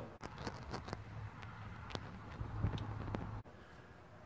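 Quiet room tone: a faint steady low hum with a few scattered soft clicks and ticks, quietest near the end.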